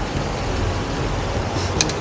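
Steady low rumble of wind on the microphone, with a few faint clicks near the end.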